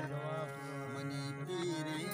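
Balochi folk music: a steady drone under a wavering, sliding melodic line, with no words sung.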